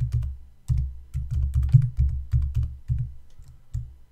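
Typing on a computer keyboard: a quick, irregular run of keystroke clicks, thinning out near the end.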